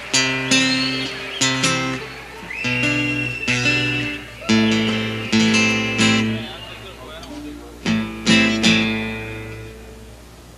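Live band playing: strummed acoustic guitar chords struck in sharp, accented hits with a high bending lead line over them. The last chord rings out and fades near the end.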